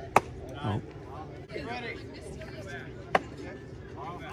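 Two sharp pops of a baseball smacking into a leather glove, one just after the start and another about three seconds later, amid scattered chatter from players and spectators.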